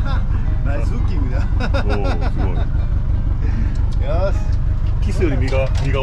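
Boat engine idling with a steady low rumble, with voices over it.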